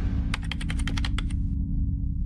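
Computer keyboard typing sound effect, about ten quick keystrokes in a little over a second, timed to text being typed on screen. A low steady tone of the advert's music bed holds underneath.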